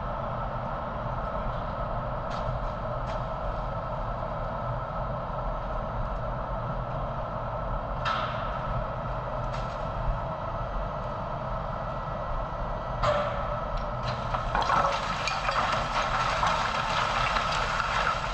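Refuse crane's grab bucket over an incinerator feed hopper: a steady mechanical hum of the plant and crane, broken by a few sharp creaks and clicks. From about three-quarters of the way through, a louder rushing rustle sets in as the grab begins to release its load of bagged garbage into the hopper.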